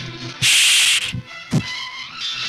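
Dubbed film fight sound effects over background music: a loud hissing swish lasting about half a second, then a single low thud about a second later.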